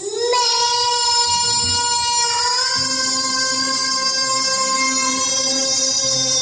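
A young girl singing into a microphone, holding one long note that steps up slightly in pitch about two seconds in, over backing music.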